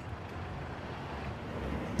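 A car driving slowly across a paved lot, its engine and tyres a steady low noise that swells slightly in the second half.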